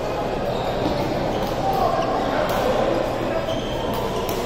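Badminton rally in a large echoing hall: sharp racket hits on the shuttlecock and shoes squeaking on the court floor, over steady background chatter.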